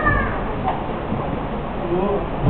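Visitors' chatter, with a high-pitched, drawn-out voice arching up and down just at the start.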